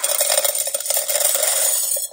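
Small crunchy fried snack pieces pouring from a foil-lined pouch into a stainless steel canister: a dense, continuous rattle of pieces hitting the metal and each other, which stops abruptly near the end.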